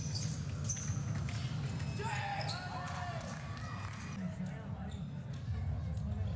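Fencers' footwork on the piste in a large hall: thudding steps and sharp clicks over a low rumble, with gliding squeaks from about two to three seconds in.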